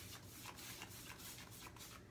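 Faint rubbing of a paintbrush stroked across a wooden cabinet panel, spreading clay-based paint.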